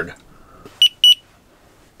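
Handheld infrared thermometer beeping twice as it takes a temperature reading: two short, high beeps about a quarter second apart.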